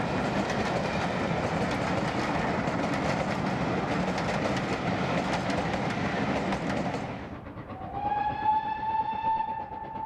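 Passing passenger coaches rolling by, a steady rush of wheel noise with fine clatter from the rails. About seven seconds in this cuts off and the train is far away: a GWR prairie tank locomotive's steam whistle sounds one long note, rising slightly as it opens.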